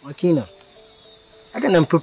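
Crickets chirping: short high chirps repeating steadily, a couple of times a second.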